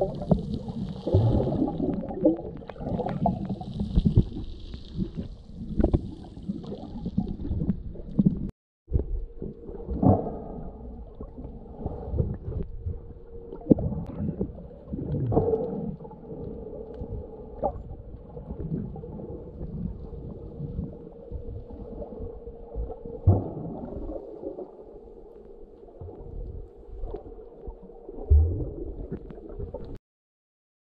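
Muffled underwater sound picked up by a camera microphone held below the surface: a low churning rumble of moving water with irregular clicks, knocks and gurgles. After a brief break about nine seconds in, a faint steady hum runs beneath it.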